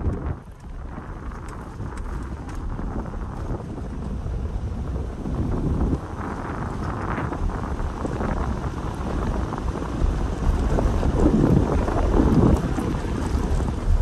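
Road noise of a car driving over an unpaved, stony dirt road: a low rumble with crunching tyre noise, getting louder over the second half.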